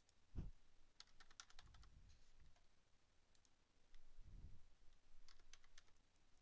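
Faint computer keyboard keystrokes as hours are typed into a payroll grid, in two short clusters, about a second in and again near the end, with a few soft low thumps between.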